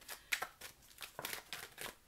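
Tarot cards being handled: a scattered run of short, crisp papery snaps and slides as a card is drawn from the deck and laid on the cloth.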